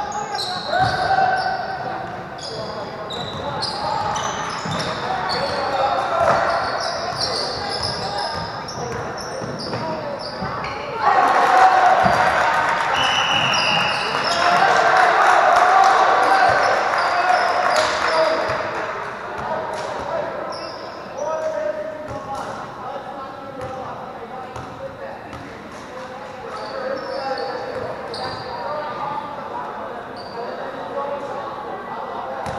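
Live basketball in a large echoing gym: a ball bouncing on the hardwood, short high squeaks, and the voices of players and spectators. The crowd noise swells louder for several seconds in the middle.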